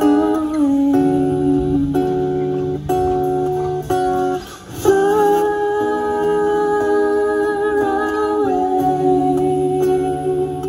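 Live band playing a slow passage: guitar and bass under a melody of long held notes that shift in pitch a few times, with a short break about halfway through.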